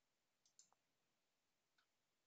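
Near silence with a few faint clicks from computer keys or a mouse during code editing: three close together about half a second in, then one more near the end.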